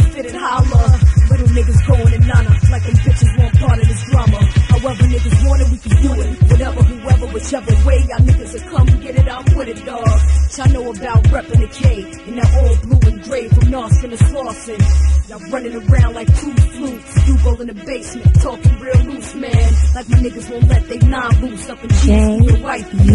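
Hip hop track from a DJ mixtape: a loud, steady beat with heavy bass hits and rapping over it.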